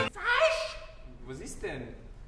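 A person's voice: a brief gasp-like vocal sound that rises in pitch as the string trio's playing breaks off, followed by fainter gliding vocal sounds.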